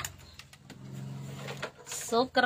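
Handling noise from an acoustic guitar being lifted and moved: a few knocks and rubs against its body, with a faint low steady tone underneath.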